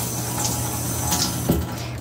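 Kitchen faucet running into a stainless steel sink, water splashing over a hand, with a few brief knocks.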